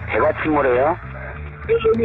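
A voice speaking in two short bursts, over background music with a low, evenly repeating bass note.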